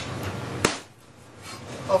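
A single sharp chop of a knife through a grouse's leg joint onto a chopping board, about two-thirds of a second in.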